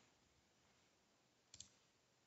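Near silence, broken about one and a half seconds in by a faint, quick double click of a computer mouse turning the page in an on-screen e-book viewer.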